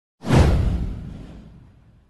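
A single whoosh sound effect with a deep low boom under it, starting suddenly a moment in, sweeping down in pitch and dying away over about a second and a half.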